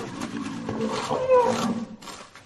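Rhinoceros calling: low, rough calls with a short higher-pitched note about one and a half seconds in, stopping just before two seconds.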